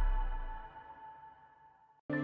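The end of a TV channel's ad-break ident music: a held synthesizer chord fading out, its bass dying first and a single higher tone lingering before it dies away to silence.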